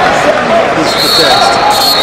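A referee's whistle blows one long, steady, high blast starting about a second in, the signal to start wrestling. Underneath is constant arena crowd noise with shouting voices.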